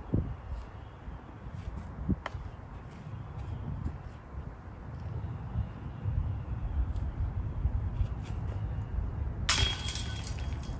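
A steady low rumble, then near the end a disc golf disc hits the chains of a basket with a sharp metallic clatter and ringing that carries on. The putt stays in the basket.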